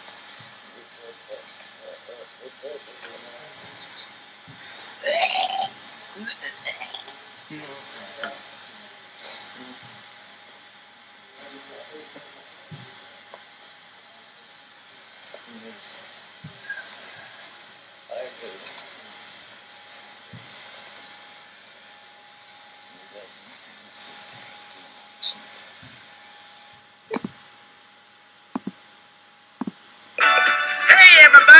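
Faint, intermittent voices in the background, with a few short sharp clicks near the end.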